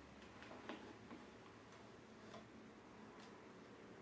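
Near silence with a few faint, scattered clicks and taps: light handling of gaffer tape and the glass and metal test plates on a tabletop.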